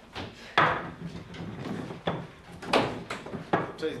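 A wooden door being opened, with several knocks and thuds; the loudest come about half a second in and again near three seconds in.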